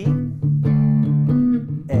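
Electric guitar through a small combo amp playing a D7 chord, the IV chord of a blues in A, strummed several times in a steady rhythm. A new chord strikes right at the end as the progression moves on to A.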